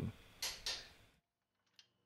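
Two short metallic clicks within the first second, as from a click-type torque wrench breaking over at its set torque on a control-arm bolt, then near silence.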